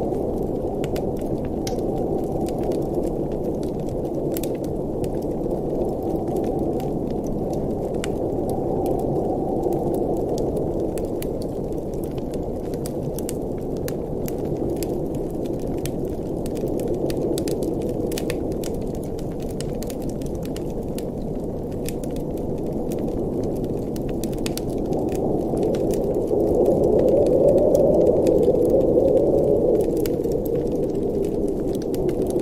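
Wood fire crackling in a fireplace, with frequent small sharp pops, over a steady low rush of blizzard wind that swells near the end.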